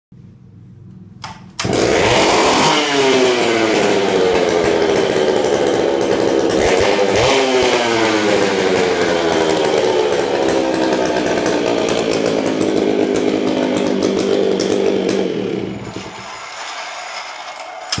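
Dolmar CA two-stroke chainsaw engine starting about a second and a half in and running at high revs. The revs fall away, pick up briefly again about 7 s in, then sink slowly. Near the end the engine note drops much quieter for about two seconds.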